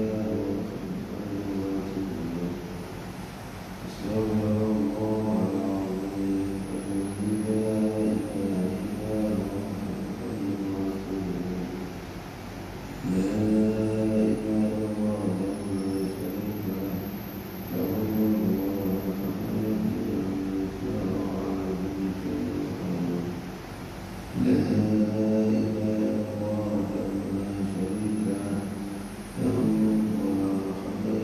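A man's voice chanting in Arabic in long, drawn-out held notes, typical of post-prayer zikir or supplication in a mosque. The phrases come in runs of several seconds with brief pauses between them.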